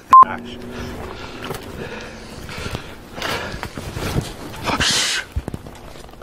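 A click and a short, loud electronic beep right at the start, then quieter rustling and movement sounds with a couple of louder breathy swells around the middle and near the end.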